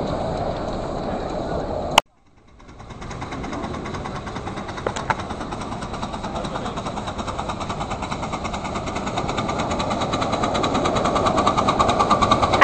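Live-steam miniature locomotive approaching, its exhaust beat a fast, even rhythm that grows steadily louder. It follows a sudden click and a brief dropout about two seconds in.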